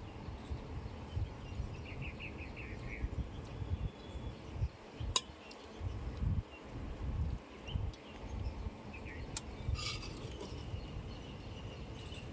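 A metal ladle scooping curry in a large metal kadhai, with a few sharp clinks of metal on metal, over an uneven low rumble of wind on the microphone. A short run of quick high chirps sounds about two seconds in.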